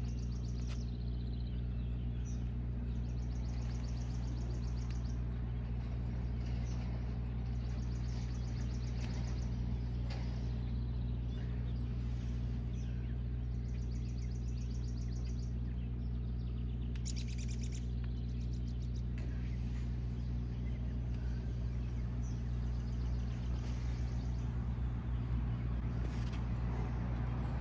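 A motor running steadily, a constant low hum, with birds chirping briefly now and then above it.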